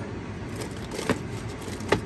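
Two light clicks of the bamboo steamer being handled, one about a second in and one near the end, over a steady low background rumble.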